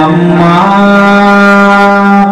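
A Buddhist monk's voice chanting through a microphone in long, drawn-out held notes, the pitch stepping up once about half a second in and then held steady.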